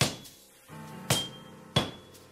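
A blacksmith's hammer striking a white-hot steel billet on an anvil: three blows, each with a short high ring, the last two close together. Soft background music plays under the blows.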